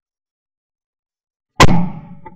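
A single shot from a 12-bore Davide Pedersoli La Bohemienne side-by-side hammer shotgun, heard from a camera mounted on the gun: one sharp, loud report about one and a half seconds in, trailing off in an echo.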